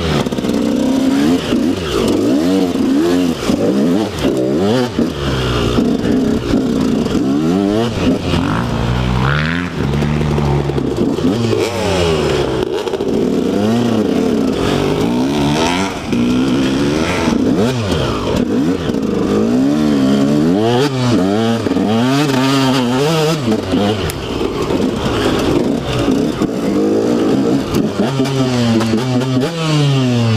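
KTM 125 SX two-stroke single-cylinder dirt bike engine revving up and down constantly while being ridden off-road, its pitch rising and falling with each blip of the throttle.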